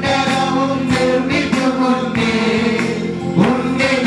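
A group of men singing a Malayalam Christian worship song together, accompanied by an electronic keyboard with a steady beat.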